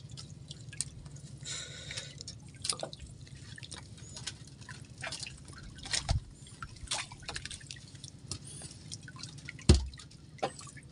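Wet fishing handline being hauled in by hand over the side of a wooden outrigger boat: irregular drips and small splashes of water falling from the line, over a low steady hum. A sharp knock near the end is the loudest sound.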